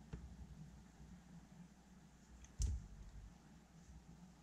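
Faint handling sounds of hands working a metal crochet hook through yarn, with one sharp click about two and a half seconds in.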